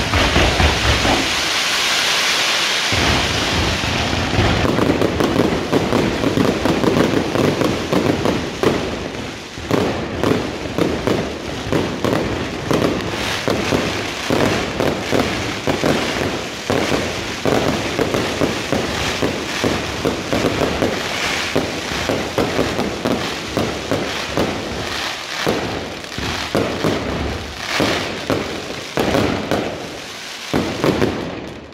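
Fireworks going off in a dense, rapid barrage of crackling bangs with no let-up. A hissing rush sounds about a second or two in.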